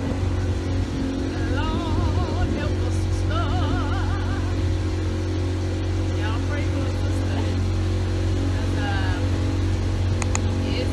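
A motorboat's engine running at a steady drone underway on a river. A wavering, singing-like voice rises over it a few times.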